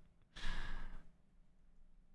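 A man lets out one breathy sigh, an exhale of about two-thirds of a second coming off the end of a laugh.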